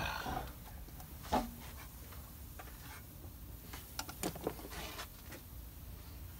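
Quiet handling of engine parts by hand, with a few light clicks and knocks: one about a second and a half in and a small cluster around four seconds in.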